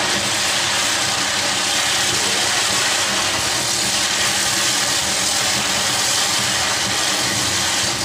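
Steady hissing of a firework burning on a spinning Beyblade, throwing out a constant spray of sparks.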